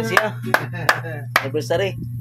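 Five sharp knocks, evenly spaced at about three a second, over people talking and a steady low hum.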